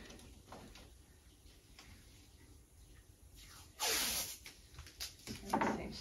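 Blue painter's tape pulled off the roll in two short noisy pulls, the first about four seconds in and the second near the end; before them, only faint handling.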